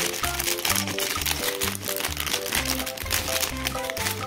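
Plastic ice cream bar wrapper crinkling in the hands as it is worked open, over background music with a steady run of notes and bass.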